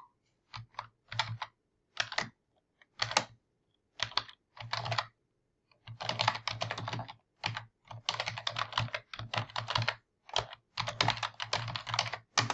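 Typing on a computer keyboard to enter a web address: scattered keystrokes in short clusters at first, then fast continuous typing from about halfway in.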